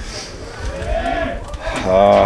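A man's drawn-out hesitation hum, one long tone rising and then falling in pitch, with speech resuming near the end.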